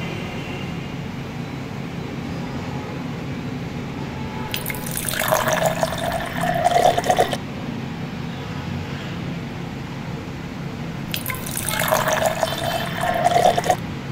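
Watermelon juice poured from a stainless steel bowl into a glass tumbler, twice: two pours of about three seconds each, a few seconds apart, splashing and gurgling as each glass fills.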